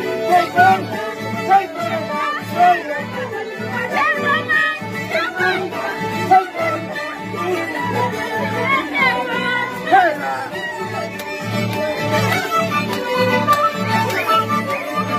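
Live string band playing: a violin melody over strummed guitar and mandolin with a steady, even beat.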